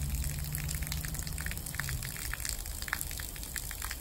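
Garden hose water spraying out under thumb pressure and landing on a concrete driveway: a steady hiss and patter of water. A low steady hum runs underneath and stops about halfway.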